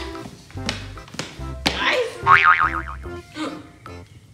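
Upbeat background music with a bouncing bass line and sharp percussive hits, and a wobbling, boing-like tone a little after two seconds in.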